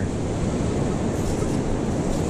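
Steady rushing noise of ocean surf mixed with wind on the microphone.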